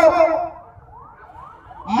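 Faint siren, its pitch rising and falling over and over, heard in a short gap in a man's speech.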